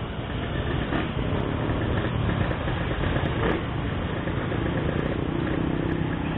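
Several motor scooters idling in a stopped queue of traffic, a steady engine rumble with no revving.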